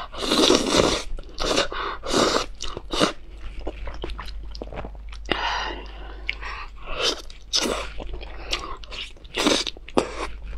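Close-miked slurping of spicy instant noodles during the first second, then wet chewing in a run of short bursts. A louder bite into a piece of glazed grilled eel comes near the end.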